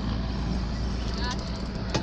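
A boat's 115 hp outboard motor idling, a steady low hum under a wash of wind and water noise.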